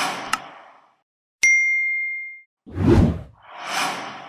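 Animated subscribe-button sound effects: a whoosh, a short click, then a bright bell ding that rings out for about a second, followed by two more whooshes, the first with a deep thump.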